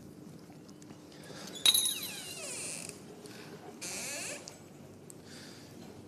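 Wooden-framed glass door being pushed open: a sharp click of the latch, then a falling creak of the hinge, and a second short scrape a couple of seconds later.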